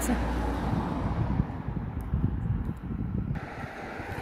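Wind buffeting the microphone outdoors, an irregular low rumble with no speech over it.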